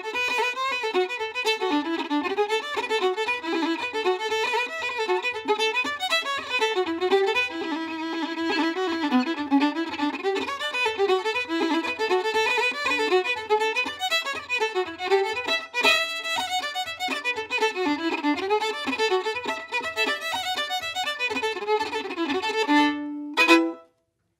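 Solo fiddle playing a fast Irish tune, the melody moving quickly from note to note, with a soft low pulse keeping a steady beat beneath it about twice a second. The tune ends on a held note near the end.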